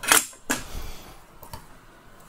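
Clicks and light clatter of a hand tool being set down and a lithium cell pack being handled on a workbench: a sharp stroke just after the start, another about half a second later, then a few faint ticks.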